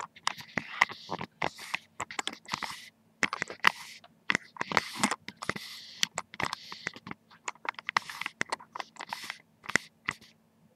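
Crumpled wrapping paper rustling and crinkling as it is handled, in irregular crackling bursts with sharp crinkles throughout and a couple of brief pauses.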